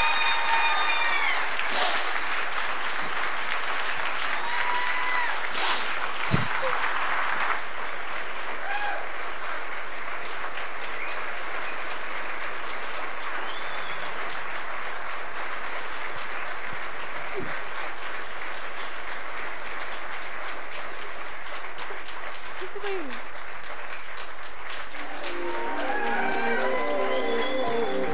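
An audience applauding steadily, with a few shouted whoops and cheers in the first several seconds.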